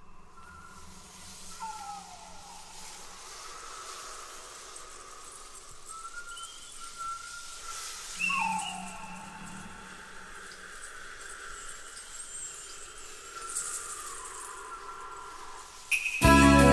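Quiet record intro of faint bird-like calls over a steady hiss: a few falling glides and short higher chirps, with a thin held tone underneath. The full band comes in abruptly at the very end.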